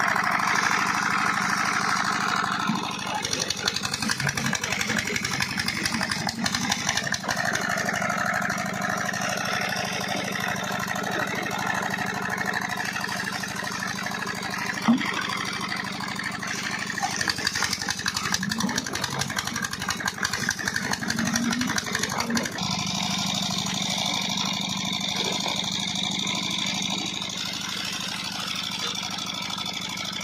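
Stationary flywheel engine running steadily, belt-driving the tubewell's pump, which is delivering water from its outlet pipe: the pump is primed and working.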